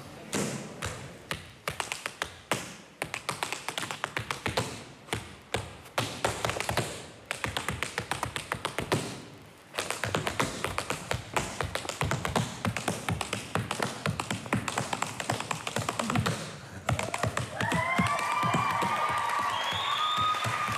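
Unaccompanied tap dancing: tap shoes striking a wooden stage in rapid, shifting rhythms, with a brief pause just before halfway and then a faster, denser run of taps. Shouts from the audience join in about three seconds before the end.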